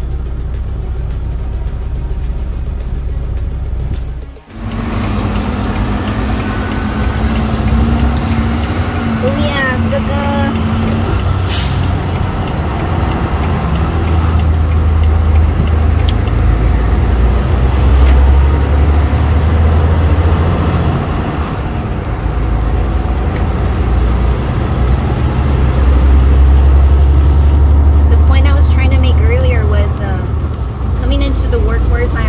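Inside a semi-truck cab: a steady low engine hum at first, then, after a brief drop about four seconds in, the louder low drone of the truck's engine and road noise while cruising on the highway, swelling and easing.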